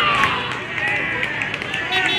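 Several people shouting and calling out at an Australian rules football match, over steady open-air background noise.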